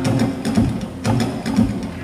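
Acoustic guitar strummed in a steady rhythm, several strokes a second, with no singing over it.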